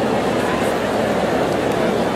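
Steady babble of a large crowd of spectators, many voices talking at once with no single voice standing out.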